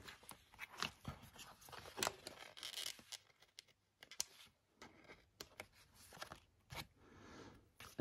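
Faint paper handling: soft crinkling, scattered small ticks and short peeling sounds as tiny paper stickers are lifted off a sticker sheet with tweezers and pressed onto a page.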